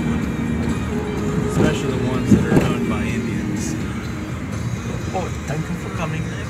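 Inside a moving car: steady engine and road noise, with music playing from the car stereo and voices talking over it.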